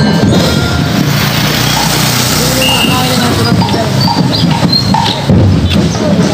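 Marching drum and lyre band music: scattered bell-lyre notes over a dense crowd hubbub, with the band getting louder about five seconds in as drums come in.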